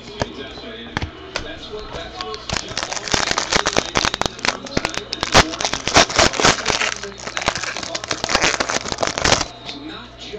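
Foil wrapper of a trading-card pack crinkling as it is torn open and handled, a dense run of crackles starting about two and a half seconds in and stopping just before the end.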